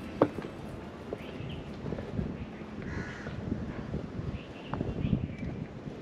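A crow caws once about halfway through, with a few faint bird chirps, over irregular footsteps on stone steps and low wind rumble on the microphone.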